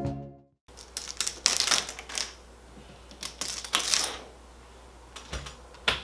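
Plastic wall stencil, held on with spray adhesive, being peeled off a textured wall and handled: a run of short crackles and rustles that come in several clusters.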